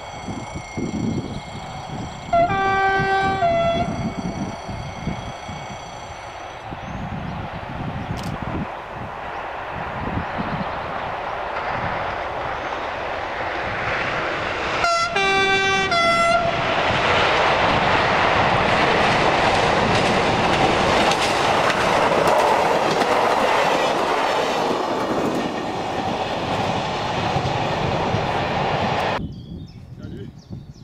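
SNCF X2800-class 600 hp diesel railcar approaching: it sounds its two-tone horn about three seconds in, then twice more in quick succession about fifteen seconds in, while its diesel engine and wheels grow steadily louder as it nears, loudest in the second half, until the sound cuts off suddenly near the end.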